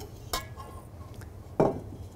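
A stainless steel mixing bowl and wire whisk being handled on a worktop: a metal clink with a brief ring about a third of a second in, a few fainter clinks, and a louder short knock near the end.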